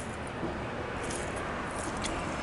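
Quiet outdoor background noise, steady, with a few faint short clicks about a second in and near the end.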